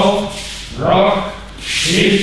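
A man's voice calling out in a steady rhythm, one short call about every second, each with a breathy hiss, keeping time for a group arm-swinging exercise.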